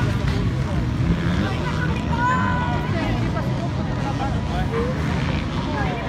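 Many motocross bike engines revving together as the pack rides off from the start, with people talking close by.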